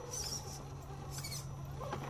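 Scale RC rock crawler with a brushed motor creeping slowly over rocks: a steady low hum from the motor and drivetrain, with two short high-pitched squeaky bursts about a second apart.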